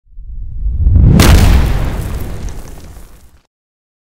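Cinematic boom-and-impact sound effect for an animated logo intro. A low rumble swells, a sharp hit comes a little over a second in, and a deep boom then decays away by about three and a half seconds.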